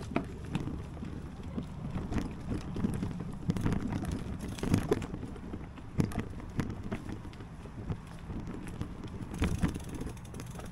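Wind rumbling on the camera microphone, with irregular knocks and crunches from the camera being carried along a forest dirt trail.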